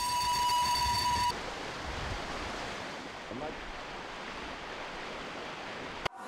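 Electric passenger train running across a bridge: a steady high whine for about the first second, which cuts off, followed by a steady rushing noise.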